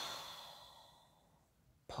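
A man's long sigh, breathed out through the nose, loudest at the start and fading away over about a second and a half.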